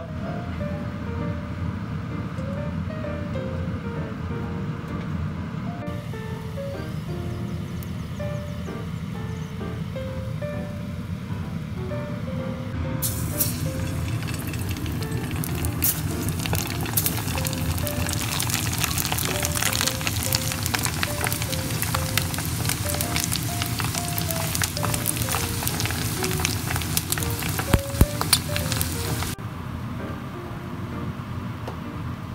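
Background music throughout. About halfway through, the crackling sizzle of potato-starch-coated moray eel strips deep-frying in hot oil joins it and cuts off suddenly just before the end.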